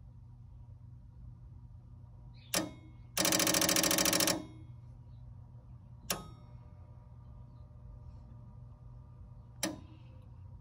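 Relay in a 1980 Williams System 6 pinball machine clicking once, then chattering rapidly for about a second, then clicking twice more singly, as Andre's Test ROM pulses the outputs in its PIA test, the pattern it uses to flag a bad or missing PIA chip. A steady electrical hum from the powered machine runs underneath.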